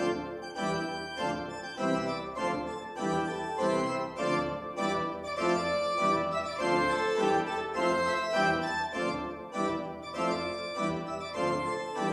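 Pipe organ music, a brisk passage of quickly changing notes and chords.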